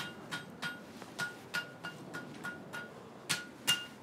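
Blacksmith's hand hammer striking hot iron on an anvil: a quick, irregular run of ringing clangs, about three a second, very vigorous, with the last two strikes the loudest.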